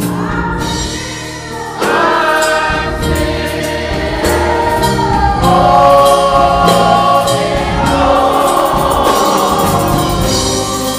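Gospel choir singing, with a woman's lead voice on a microphone, over electronic keyboard accompaniment. The music swells louder about two seconds in.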